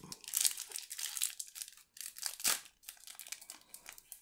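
Shiny foil booster-pack wrapper of Panini Adrenalyn XL trading cards being torn open and pulled apart by hand: irregular crinkling and crackling, with one louder crackle about two and a half seconds in.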